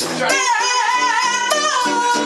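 A woman belting long held sung notes into a microphone, her voice wavering slightly with a short break about halfway through, over guitar accompaniment.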